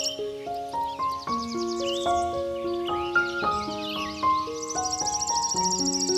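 Slow, gentle piano music with long held notes, over a nature-sound bed. A high, pulsing insect-like trill drops out at the start and returns about a second before the end, with wavering animal chirps in between.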